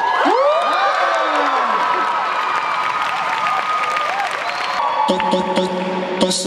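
Crowd cheering, whooping and shouting at a dance battle, then music with a steady beat from the DJ starts near the end.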